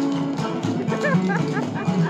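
Live bluegrass band playing, with a rhythmic strummed guitar and sustained notes. From about a second in, a few short, high, wavering squeals sound over the music.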